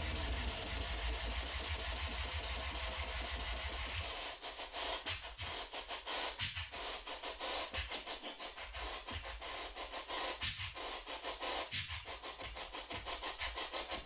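DJ scratching a vinyl record back and forth on a Stanton turntable over a bass-heavy beat. About four seconds in, the beat drops away and the scratches carry on alone in quick, uneven strokes that sweep up and down in pitch.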